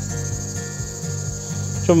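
Insects trilling steadily at a high pitch, cricket-like, over a low steady hum.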